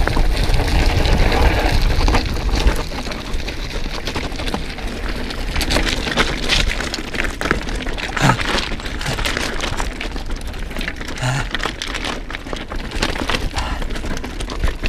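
Mountain bike tyres crunching and clattering over loose rocky scree on a descent, the bike rattling and rocks knocking in many sharp clicks. Wind rumbles on the microphone for the first few seconds.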